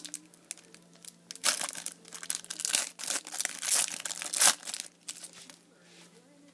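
Plastic wrapper of a trading-card pack being torn open and crinkled. A run of crackles and rips begins about a second and a half in and stops shortly before the end, with the loudest rip around four and a half seconds in.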